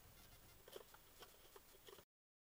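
Faint, irregular light tapping and scratching of a small animal moving about, a handful of short taps in the second half.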